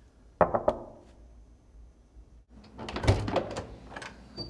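Knuckles rapping a few times on a room door, then a couple of seconds later the latch clicks and the door is pulled open with a thud.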